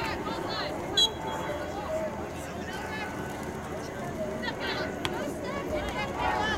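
Distant shouts and calls of players and spectators across an open soccer field, with one short, sharp referee's whistle blast about a second in.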